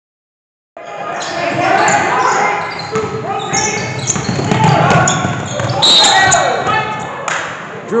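Basketball game on a hardwood gym floor: the ball being dribbled and sneakers squeaking, mixed with players' shouts, all echoing in the hall. It starts abruptly under a second in.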